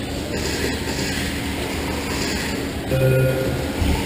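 Electric RC race cars running on a dirt track, their motors whining and tyres scrabbling, the sound swelling and fading as they pass. About three seconds in, a short steady low hum rises over them and is the loudest part.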